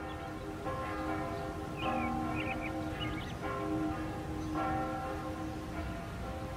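Church bells ringing, a new stroke about every second or so, each one ringing on over the last, with small birds chirping now and then.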